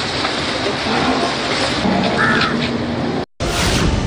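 Steady outdoor noise like wind on the microphone, with faint voices and a brief higher-pitched sound about two seconds in. The sound cuts off sharply a little after three seconds, and a loud whooshing news transition sting follows.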